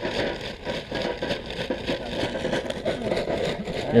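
Charcoal pouring from a paper sack into a small barbecue grill: an uneven, continuous clatter and rattle of lumps.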